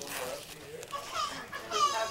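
A baby babbling and squealing, with a high-pitched squeal, the loudest sound, near the end.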